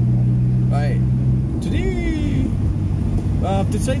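Car engine droning steadily, heard from inside the moving car with road rumble underneath; its note drops about one and a half seconds in as the engine eases off. A few short vocal sounds break in.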